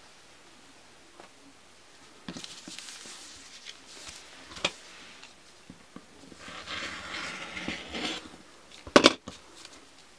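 Paper template and fabric rustling and sliding against a cutting mat as they are handled, in two soft stretches, with a light click in the middle and a sharp tap near the end.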